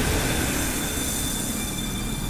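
Dramatic soundtrack sound effect: a steady rumbling, hissing drone with thin, high, whining tones running through it.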